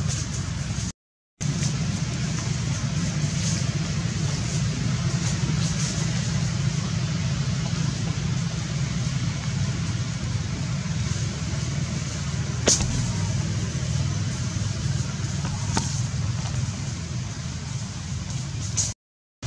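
A steady low rumble with a light hiss over it, cutting out completely for a moment about a second in. A sharp click comes about thirteen seconds in, and a fainter one a few seconds later.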